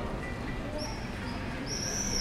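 Two high-pitched bird chirps, a short one about a second in and a longer one near the end that drops in pitch as it ends, over a steady low background hum.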